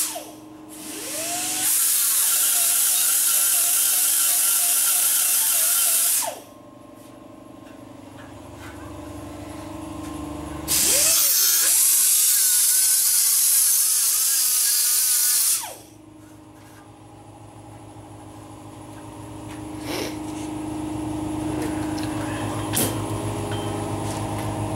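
A handheld power tool run in two bursts of about five seconds each, with a high hiss. Each burst spins up at the start and winds down at the end, and a steady hum carries on between them.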